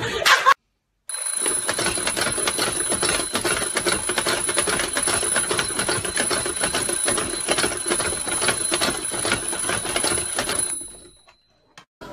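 Mechanical twin-bell alarm clock ringing: a rapid, continuous hammer rattle against the bells with high ringing tones. It starts suddenly about a second in and dies away near the end.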